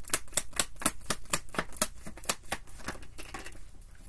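A deck of tarot cards being shuffled by hand: a quick run of crisp card clicks, about five a second, thinning out in the second half.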